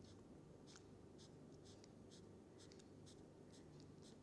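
Felt-tip marker drawing a column of short lines on paper: about a dozen faint, quick strokes, roughly three a second, over a low steady room hum.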